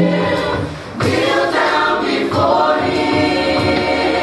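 Gospel choir singing with full voices. The held chord breaks off briefly just before a second in, then the singers come back in with a new phrase.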